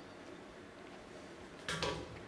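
Short metallic clank, a quick double clink near the end, from the hanging rings and steel bar hardware of a ninja obstacle as a climber swings across and takes hold of the next grip.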